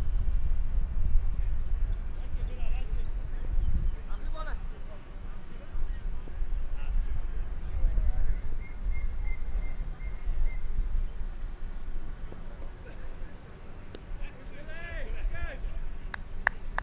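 Outdoor ambience at a cricket ground: a heavy, uneven low rumble of wind on the microphone under faint distant voices, with a short call about a second before the end.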